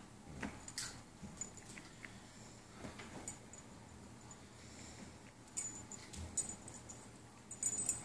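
Small dog's metal collar tags clinking faintly and irregularly as the dog shifts about and mouths a toy on soft bedding, with light rustling and scattered clicks.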